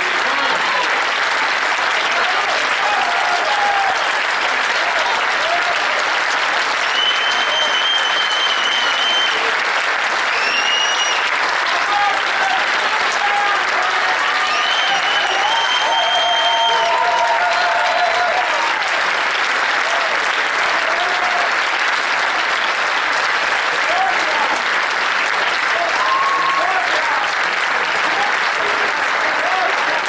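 An audience applauding steadily after a tango performance, with voices calling out over the clapping. High whistles cut through twice, about a quarter and halfway through.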